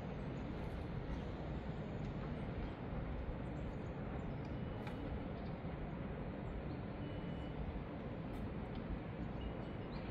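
Steady low outdoor rumble of a city's distant traffic heard from high above, with no distinct events standing out.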